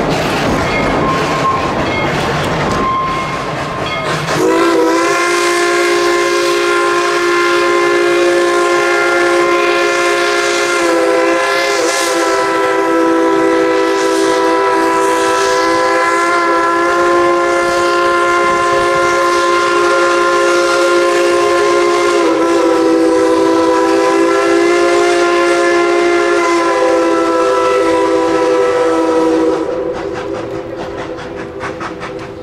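Passenger cars of a steam train rolling past, then about four seconds in the locomotive's steam whistle opens into one long, unbroken blast of several tones that holds for over twenty seconds, wavering slightly in pitch, and cuts off at the end.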